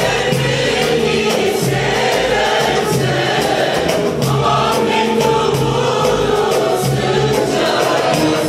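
Mixed choir singing a Turkish folk song in unison, accompanied by bağlamas and guitars, over a steady even beat.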